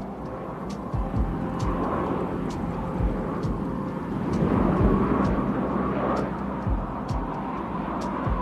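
Single-engine light aircraft in low flight: a steady engine drone with rushing air noise that swells in the middle. Repeated short low thumps run through it.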